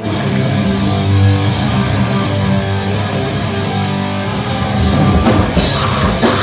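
Hardcore punk band playing live: distorted electric guitar holds chords over low bass notes, and the drums crash in about five and a half seconds in.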